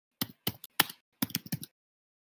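Computer keyboard being typed on, heard through a video-call microphone: several quick bursts of keystrokes, about a dozen clicks in a second and a half.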